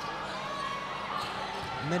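Basketball game sound in an indoor arena: a steady crowd murmur with a ball being dribbled on the hardwood court.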